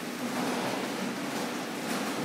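Steady, even background din with no distinct event, the kind of noise that fills a busy indoor hall.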